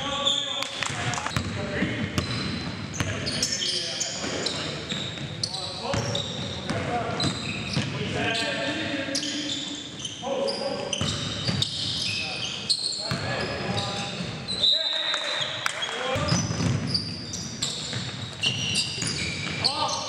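Sounds of a live indoor basketball game: the ball bouncing on the gym floor, sneakers squeaking on the hardwood, and players calling out, all echoing in a large gym.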